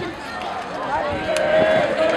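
Outdoor crowd of spectators with many voices talking over one another.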